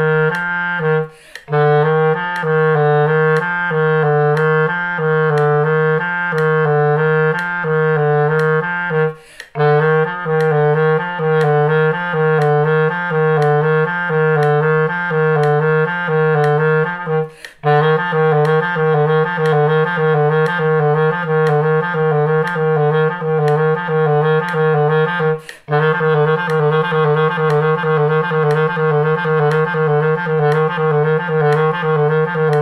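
Clarinet playing a low-register finger exercise: the notes E, F and G repeat over and over, with E taken by the right pinky key and F by the left. Short breath gaps come about every eight seconds, and the note changes get faster in the later phrases.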